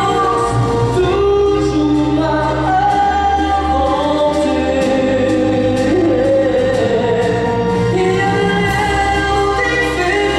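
A male singer singing a French song live into a microphone over amplified instrumental accompaniment, holding long notes that slide between pitches.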